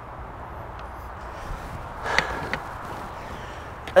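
Steady outdoor background noise, with one short, sharp sound about two seconds in.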